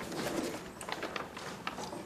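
A pigeon or dove cooing softly in the background, with a few light clicks and taps close by.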